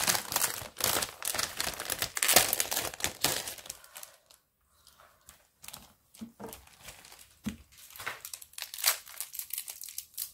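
Clear plastic packaging sleeve crinkling as a paper pad is handled and slid out of it, dense and loud for the first few seconds. After a short lull, lighter scattered rustles and taps of paper and plastic.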